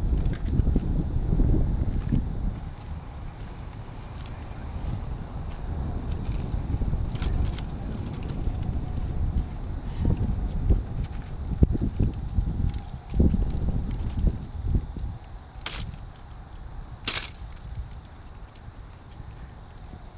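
Wind buffeting the camera microphone as a gusting low rumble, strongest in the first couple of seconds, with two sharp clicks about three-quarters of the way through.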